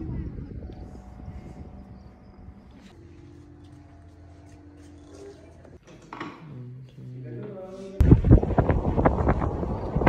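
A steady low hum under quiet room tone, then, with a sudden jump about eight seconds in, loud gusty wind buffeting the microphone in a car moving at speed.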